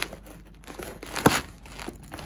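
Packing tape being cut and torn on a cardboard parcel box with a pocket knife: crinkling and scraping, with a short sharp rip at the start and a louder one about a second in.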